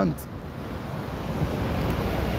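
Wind buffeting the phone's microphone over steady street traffic, with a car passing close by.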